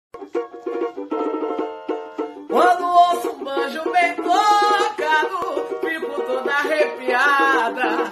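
A plucked string accompaniment plays a short run of quick notes. About two and a half seconds in, a woman's voice starts singing a samba melody over it.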